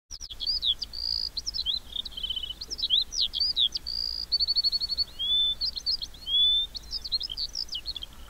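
Small songbirds singing in trees: a busy mix of quick high chirps, short rapid trills and a few longer gliding whistles.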